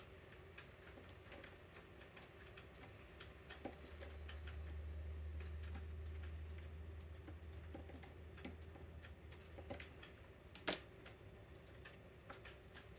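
Faint, irregular small metallic clicks of a hook pick working the pin stack of a Medeco M4 lock cylinder under tension, with one sharper click near the end. A low hum swells from about four seconds in and fades out after about ten.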